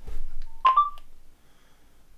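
A low handling thump, then the Nokia 6234 phone's short electronic start tone, three quick rising beeps, as its video recording begins.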